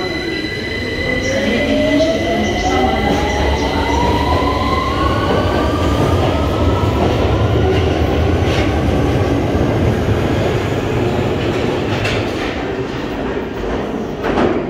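A London Underground Victoria line 2009 Stock train pulling out of the platform. Its traction motors whine, rising steadily in pitch as it accelerates over the first few seconds, then the rumble of the wheels on the rails carries on and fades as the train goes into the tunnel.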